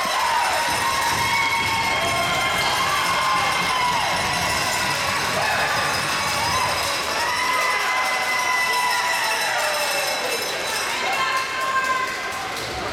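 Spectators at a youth ice hockey game cheering and shouting together, with several long, drawn-out yells overlapping.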